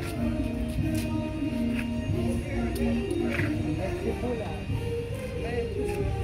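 Music with a slow melody of held notes that step from pitch to pitch, over a low background rumble.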